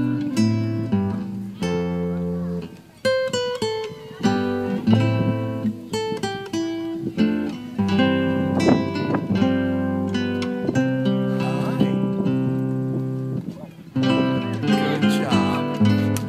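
Acoustic guitar instrumental music, with plucked melody notes over strummed chords.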